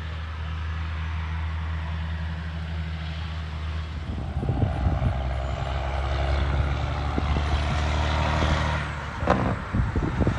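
Semi truck diesel engine running steadily as the truck drives along a road. About four seconds in, the sound changes to a second semi, a long-nose tractor pulling an empty log trailer, passing closer and louder. A sharp click comes near the end.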